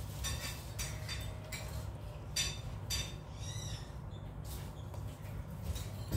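Scattered light clicks and clinks of a spoon against a ceramic bowl as someone eats, over a low steady hum.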